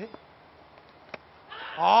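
A cricket ball hitting the stumps with one sharp click about a second in, then near the end a loud, drawn-out shout rising in pitch as the batter is bowled.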